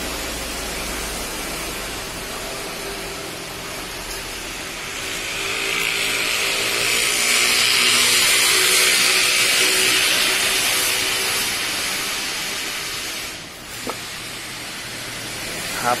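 Steady background noise of a workplace: a hiss that swells for several seconds in the middle, with a faint machine-like hum under it, then falls away briefly near the end.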